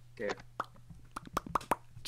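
A short spoken word, then a run of quick mouth clicks and pops in a loose rhythm, like light beatbox sounds, over a steady low electrical hum.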